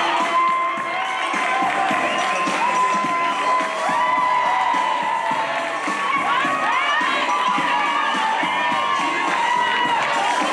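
Boxing crowd cheering and shouting, many voices overlapping, with long held calls rising above the din.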